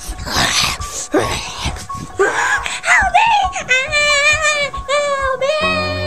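A person screaming: harsh, ragged screams for the first few seconds, then one long high wail held for about two seconds. Background music comes in near the end.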